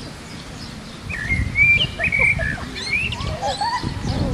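Several songbirds chirping and calling, short rising and falling notes from several birds at once, picking up about a second in over a low, uneven rumble.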